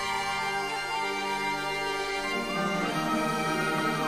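Orchestral film score playing sustained, held chords. About two and a half seconds in, lower parts enter and the sound fills out.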